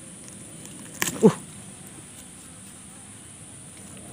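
A man's short grunt of effort about a second in, while he tugs on a snagged eel-fishing line at the burrow, over a faint steady high-pitched background hum.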